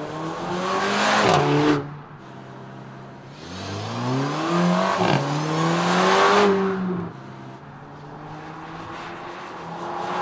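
Mercedes-AMG A45 Edition 1's 2.0-litre turbocharged four-cylinder accelerating hard, its note climbing and then dropping away sharply as the car passes. A second pull climbs through a quick upshift about five seconds in, peaks loudly and falls off near seven seconds, leaving a quieter steady engine note that begins to rise again at the end.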